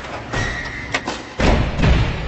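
Logo-intro sound design: a run of sharp hits, the last two about half a second apart being the loudest and deepest thuds, with a short high ringing tone early on, ringing out afterward.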